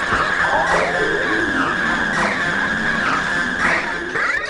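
Electronic techno track: a steady high synth tone held under repeated squealing synth swoops that bend up and down in pitch about once a second.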